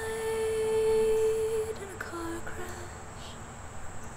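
A female voice humming a long, steady note that drops to a lower note about two seconds in, then fades.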